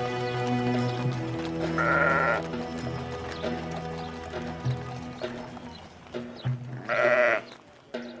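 Sheep bleating twice, once about two seconds in and again, louder, near the end, over sustained background music.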